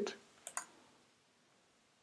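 Two quick computer mouse clicks about half a second in, selecting a menu item, followed by near silence.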